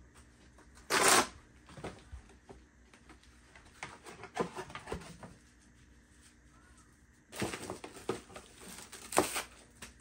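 Groceries being unpacked and put away by hand: a cardboard box opened and handled, packaging rustling and items knocking against shelves. A sharp, loud rustle comes about a second in, and a longer stretch of rustling and clatter near the end.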